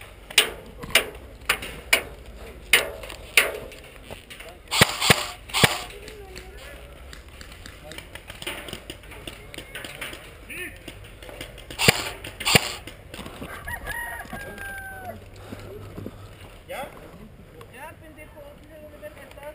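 Airsoft guns firing single shots: about ten sharp cracks in quick irregular succession over the first six seconds, with two more around the middle. Distant shouting follows near the end.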